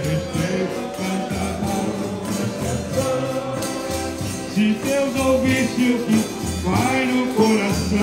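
Piano accordion playing a tune over a regular bass-drum beat, with a hand shaker rattling along; a voice may join in the second half.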